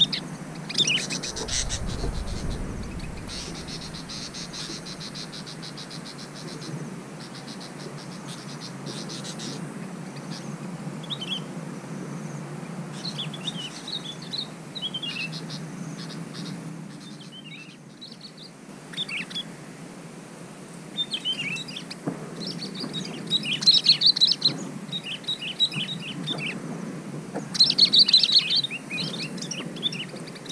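Sooty-headed bulbuls (the yellow-vented form) calling: short, quick chirping phrases again and again, loudest in two bursts near the end. A fast, even trill runs for several seconds a few seconds in.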